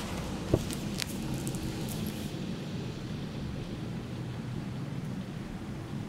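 Steady low outdoor background rumble, like distant traffic. A couple of light clicks from the diploma folder being handled come about half a second and a second in.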